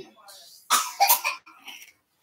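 A person coughing: two loud, sharp coughs about two-thirds of a second in, followed by a couple of softer ones.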